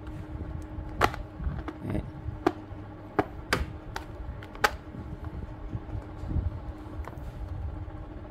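Sharp plastic clicks, a handful in the first five seconds, as a chenille microfiber mop pad is pressed onto a spin mop's plastic head and snapped onto its catches, with rustling of the pad in the hands.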